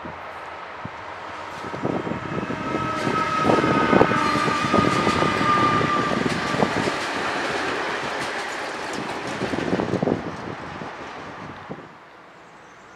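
Double-deck electric passenger train passing close by, its wheels clicking over rail joints and points. The sound builds, is loudest as the train goes past with a steady high tone over it, then fades.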